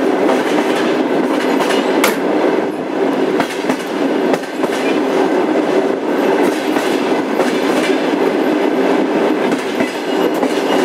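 Passenger train coach rolling along the track: a steady rumble of wheels on rails, with a few sharp clicks from the rail joints, the clearest about two seconds in.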